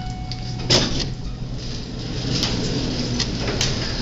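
Schindler elevator doors sliding open over a steady low hum, with a sharp knock about three-quarters of a second in and lighter clicks later.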